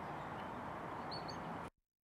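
Steady outdoor background hiss with a faint, brief bird chirp about a second in; near the end the sound cuts out to dead silence at an edit.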